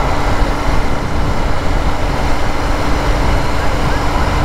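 Royal Enfield Interceptor 650 motorcycle cruising at a steady speed: its 650 cc parallel-twin engine runs with an even hum, under a steady rush of wind and road noise.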